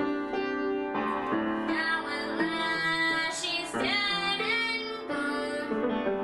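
A girl singing with vibrato while accompanying herself on an upright piano.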